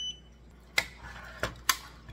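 A short, single high-pitched electronic beep from the hydroponic garden's control panel as its pump is switched on. It is followed by a few sharp knocks about a second in and near the end.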